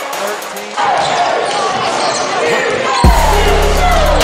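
Basketball game sound in a gym: sneakers squeaking on the hardwood, the ball bouncing and voices around the court. About three seconds in, the sound cuts to another recording that starts with a thump and carries a steady low hum.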